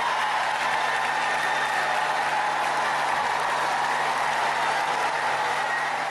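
A large audience applauding, a steady dense wash of clapping.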